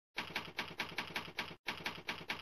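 Typewriter keystrokes as a sound effect: a quick, even run of clicks, about five a second, with a short break about a second and a half in.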